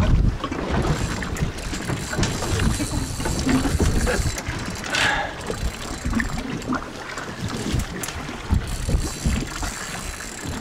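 Wind buffeting the microphone aboard a fishing boat at sea, in gusts, over the noise of the boat and water. A brief hiss comes about five seconds in.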